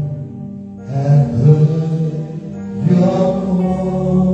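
Live worship music: sung phrases with long held notes over acoustic guitar and keyboard, with a short pause in the singing just after the start and new phrases about one and three seconds in.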